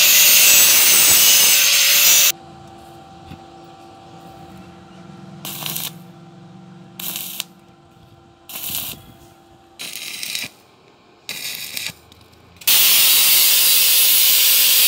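Angle grinder cutting stainless-steel square tube, stopping abruptly about two seconds in. Then a faint steady hum with five short bursts of welding-arc crackle, each under a second, as the tube joint is tack-welded; the grinder starts again near the end.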